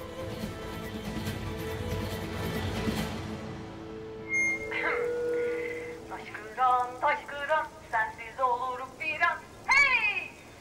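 Dramatic score music swells and then dies away about three and a half seconds in. A village public address loudspeaker switches on with a short electronic beep and a brief hum. A voice then comes over the loudspeaker in short, loud, pitched phrases.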